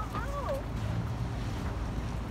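Wind buffeting the microphone, a steady low rumble throughout. A brief high voice sound rises and falls in the first half second.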